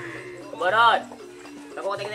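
A loud, drawn-out shouted call, rising then falling in pitch, lasting about half a second, over steady background music.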